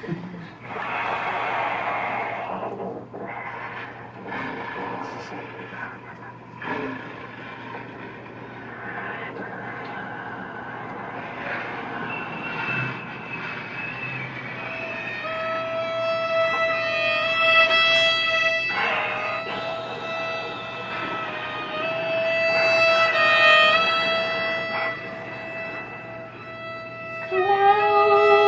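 Live trio of violin, bass clarinet and trombone playing the opening of a piece: for the first half, quiet, unpitched, shifting textures; then long held notes, the violin's clearest, enter about halfway through, with a new note sliding in near the end.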